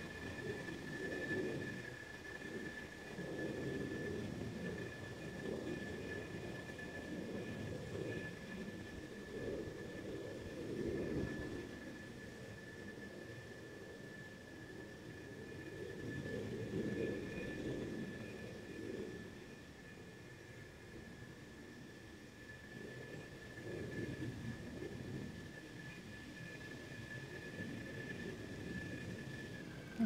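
Faint outdoor background rumble, like distant traffic or an aircraft, that swells and fades several times, with a steady faint high-pitched whine throughout.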